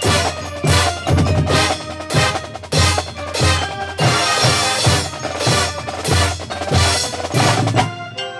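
High school marching band playing, led by its drumline: snare, tenor and bass drums strike loud accented hits about three times every two seconds over sustained pitched chords.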